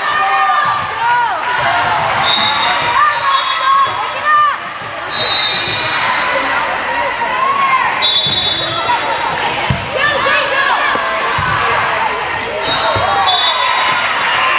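Volleyball being bounced, served and played: thuds of the ball on the floor and hands come through a steady hubbub of players' and spectators' voices calling out.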